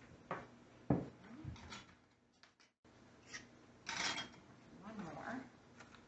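Kitchen handling sounds: two sharp knocks of hard items set down on the counter in the first second, then rustling of a small cardboard box of canning lids being opened.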